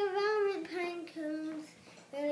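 A young girl singing: one long, slightly wavering note, then a few shorter, lower notes that trail off.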